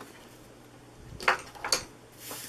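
Craft tools handled on a work mat: two short clicks about half a second apart, about a second in, as the scissors are set down and a bone folder is picked up.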